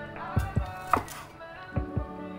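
Chef's knife chopping on a wooden cutting board, mincing garlic: about five sharp knife strikes, unevenly spaced.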